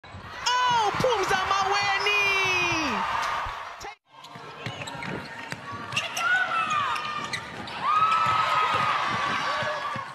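Netball match sound from an indoor court: shoes squeaking on the court and the ball bouncing, with shouts. The sound drops out briefly near four seconds, then resumes with more long squeals.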